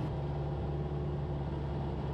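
Van's RV-8's piston engine and propeller droning steadily in the cockpit on final approach, a low, even hum.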